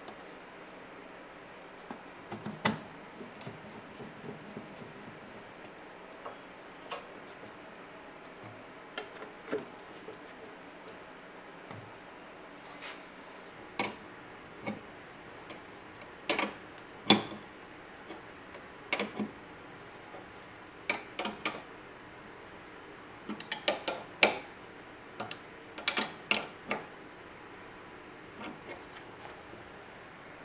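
Sparse metal clicks and clinks of a wrench and bolt hardware as a quarter-inch bolt is tightened on a tail-light antenna mount bracket. They come more often about halfway through and again in the last few seconds.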